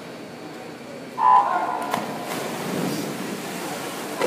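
Electronic start beep of a swimming start system, one clear tone about half a second long sounding about a second in, sending swimmers off a backstroke start. Crowd voices follow in the echoing pool hall.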